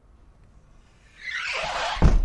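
Sound effect of a front door being opened: quiet at first, then a rising swish of air in the second half, ending in a heavy thud.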